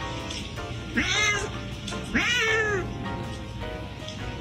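A domestic cat meowing twice: two drawn-out calls, each rising then falling in pitch, about a second in and about two seconds in, the second one longer.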